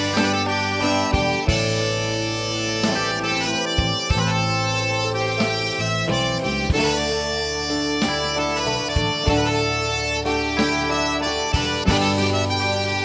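Live Cajun band playing, led by a diatonic button accordion over electric bass and drums, with the drum beat keeping a steady rhythm.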